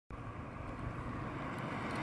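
Faint low rumble with a steady hiss, like outdoor ambience, slowly growing louder.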